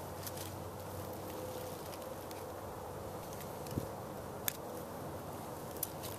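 Pocketknife blade working a piece of turtle shell: a few sparse, sharp clicks and light scraping over a steady low hiss.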